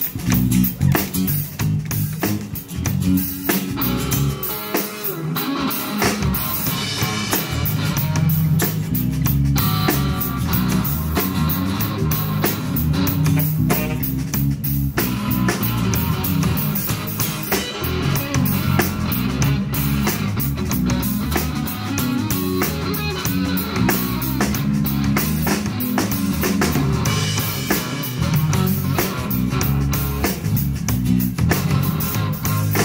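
Live band playing amplified music: drum kit, electric bass and guitars, with a steady beat throughout.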